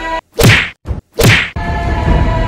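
Two whooshing punch sound effects about three-quarters of a second apart, added to a staged fight, with the background music cut out around them.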